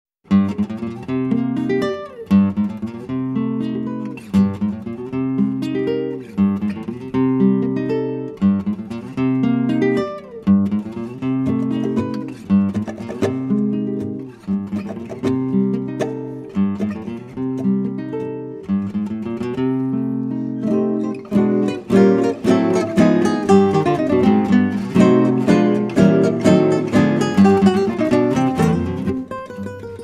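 Instrumental acoustic guitar music: plucked notes over a repeating bass figure in phrases of about two seconds, becoming fuller and busier from about two-thirds of the way in.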